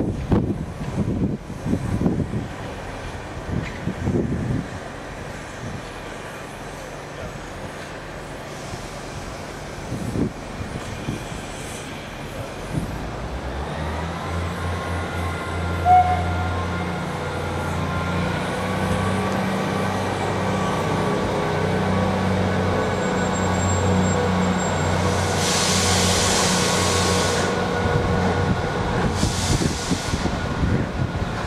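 Midland 4F 0-6-0 steam locomotive running slowly tender-first toward the platform. A steady low drone builds from about halfway, and a loud hiss of escaping steam comes in a few seconds before the end, with a shorter one just after.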